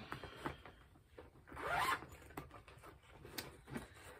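Faint handling noise: small clicks and rustling, with a short swish about halfway through, as a cross-stitch project is picked up and taken out.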